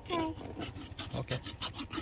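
Farrier's rasp filing a horse's hoof in repeated scraping strokes while the hoof is being shod. A brief voice sounds just after the start.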